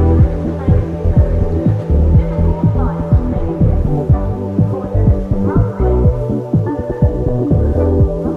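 A loud, low throbbing drone held on a few steady bass notes, with two short rising glides in the middle.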